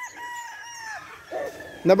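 A rooster crowing, its long drawn-out final note holding steady and then falling off about a second in, with more roosters calling faintly around it.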